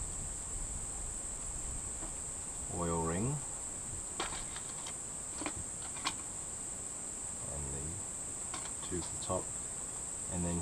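A steady high-pitched insect chorus of crickets runs throughout. A few light metallic clicks come from piston rings being handled against the engine block, and a brief murmured voice is heard a few times.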